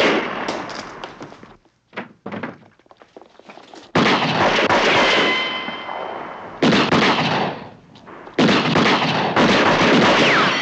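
Pistol gunfire in a shootout, each loud shot trailing off in a long echoing decay. Heavy shots come about four, six and a half and eight and a half seconds in, with a ringing note after the one at four seconds. Fainter cracks and clatter fill the quieter stretch near the start.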